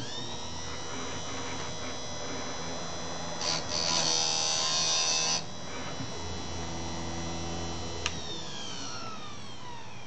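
Harbor Freight electric chainsaw-chain sharpener: the grinding-wheel motor spins up with a steady whine. For about two seconds in the middle the wheel is brought down on a chain tooth and grinds loudly and roughly. A click comes a couple of seconds from the end, and the motor then winds down with a falling whine.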